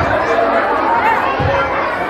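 Crowd chatter: many voices talking at once, with no single speaker standing out.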